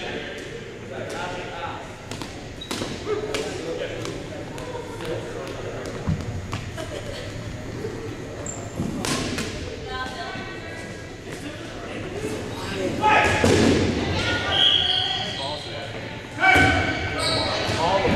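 Dodgeballs thudding and bouncing on a hardwood gym floor in a string of short, sharp hits, echoing in a large gymnasium, with players' voices and shouts rising loudest in the last few seconds.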